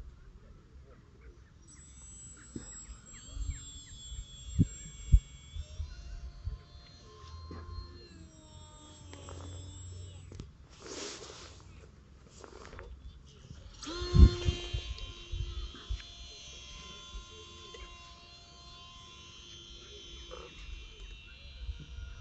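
Thin, high whine of a small electric brushless motor and three-bladed propeller on a model plane in flight. The whine starts a couple of seconds in, shifts in pitch with the throttle, and grows stronger about two-thirds of the way through. Low wind rumble and a few sharp thumps sound on the microphone.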